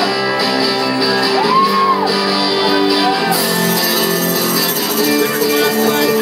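A live soul-punk band playing loudly through a club PA: electric guitars and drums with sustained chords, and a held note that bends up and back down about a second and a half in.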